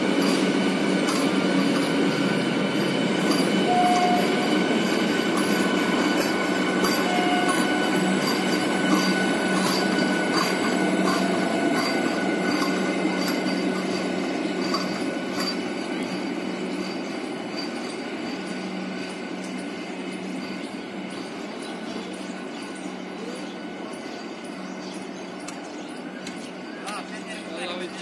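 Vande Bharat Express electric multiple-unit train running past close by: a continuous rumble of wheels on rail with steady high-pitched tones and scattered clicks. It is loud at first, then fades over the second half as the end of the train passes and recedes.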